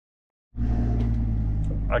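Camper van driving on a dirt track, heard from inside the cab: a steady low engine and road rumble that starts suddenly about half a second in, after a moment of silence.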